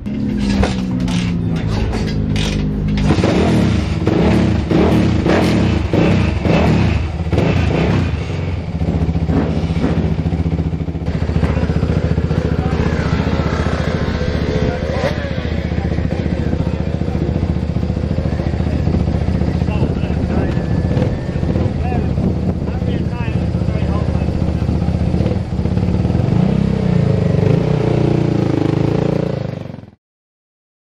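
Single-cylinder engine of a Suzuki 450 supermono race bike running in the pits, mostly steady, with some changes in pitch near the end.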